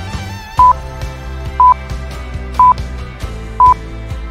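Four short, high, single-pitch electronic beeps, one each second, louder than the background music beneath them: a quiz countdown timer ticking off the guessing time.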